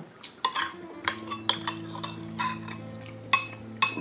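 Metal spoon and fork clinking against ceramic bowls and plates during a meal: about a dozen sharp, ringing clinks, the two loudest near the end.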